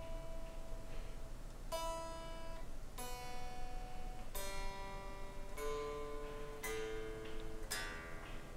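Electric guitar strings picked one at a time to check the tuning, about five single notes each left to ring out, fairly quiet.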